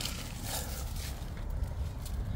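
Low, steady outdoor background rumble with faint rustling, as a hand moves through wet expanded polystyrene (EPS) bead cavity-wall insulation.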